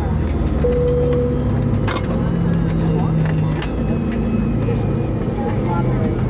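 Airliner cabin at the gate: a steady low hum inside the MD-88's cabin, with passengers talking in the background and several sharp clicks and knocks. A brief steady tone sounds about half a second in.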